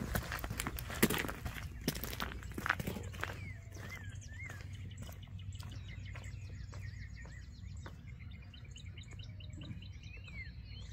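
Footsteps crunching on gravel for the first few seconds, then birds chirping in short rising-and-falling calls over a low steady hum.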